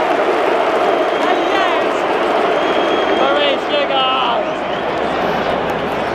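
Football stadium crowd: thousands of voices chanting and shouting in a dense, continuous din. A few louder individual voices nearby stand out from the mass about halfway through.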